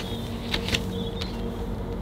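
Cardboard LP gatefold sleeve being handled and turned over, with a few short rustles and taps, over a steady low hum.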